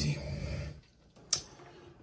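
A man's voice trailing off in the first moments, a brief hush, then a single sharp click about a second and a third in.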